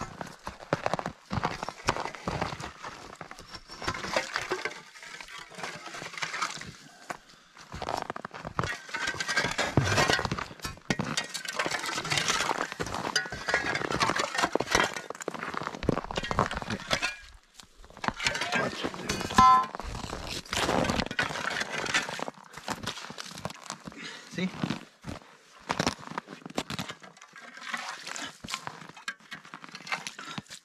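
Shovel and steel ice chisel working in a slushy ice-fishing hole: repeated crunching, scraping and clinking of broken ice chunks being chipped and scooped out.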